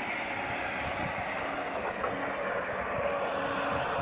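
Steady outdoor background noise with a faint, even engine hum from construction machinery.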